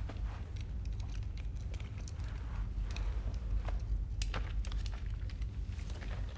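Quiet room tone with a steady low hum, broken by scattered faint small clicks and rustles.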